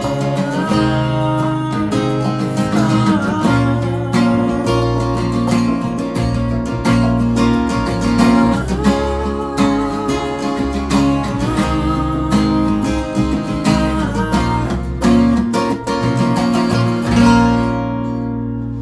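Steel-string dreadnought acoustic guitar strummed with a pick through the closing bars of a song. It ends on a loud final chord about a second before the end, left ringing.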